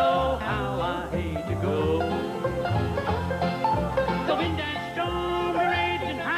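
Bluegrass band playing an instrumental break between verses: mandolin and acoustic guitars picking a melody over a steady bass beat.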